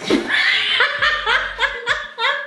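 A person bursting into loud, high-pitched laughter, a run of quick repeated laughs at about four or five a second.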